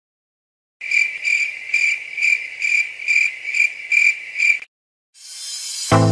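A high chirping sound effect: about ten short chirps on one pitch, evenly spaced at roughly two and a half a second, lasting nearly four seconds. Near the end a rising whoosh leads straight into music.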